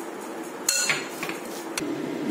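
Metal spoon striking a glass mixing bowl while mixing a thick lentil batter: one sharp clink that rings briefly about a second in, then a lighter knock near the end.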